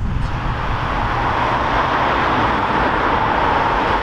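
Passenger train running: a steady low rumble with a rushing noise that grows louder over the four seconds.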